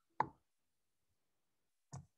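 Mostly dead silence on a noise-gated video-call line, broken by one brief, sharp sound about a quarter second in and a fainter one at the very end.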